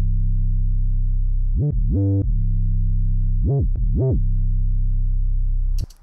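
An 808 sub-bass playing alone with no drums: long held low notes whose pitch slides up and back down between notes, the 808 glide effect, about four times through the middle of the passage. It cuts off just before the end.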